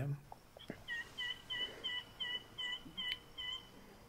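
A bird calling a run of about nine short, evenly spaced notes, about three a second, stopping shortly before the end. There is a single sharp click about three seconds in.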